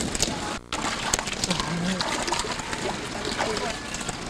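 Water splashing and sloshing, with many short splashy clicks, under people talking.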